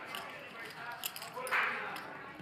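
Faint background voices and room noise at a poker table, with a few light clicks of poker chips being handled.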